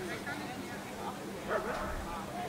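A dog whining with short high yips, the loudest about one and a half seconds in, over faint voices.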